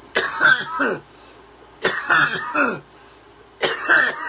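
A man coughing in three bouts, each under a second and about two seconds apart, after inhaling a big dab.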